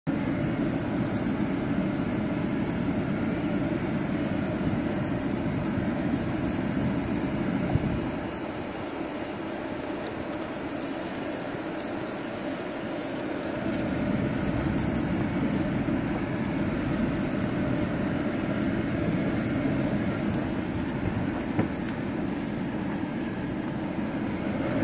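Pickup truck running and rolling slowly over farm ground, heard from inside the cab: a steady low engine-and-tyre noise. It eases off for several seconds in the middle, then picks up again.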